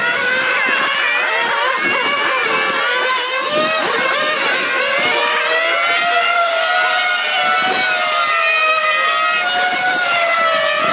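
Several 1/8-scale nitro on-road RC race cars running at high revs, their small two-stroke glow engines making overlapping high whines. The pitches rise and fall over and over as the cars accelerate and lift off around the corners.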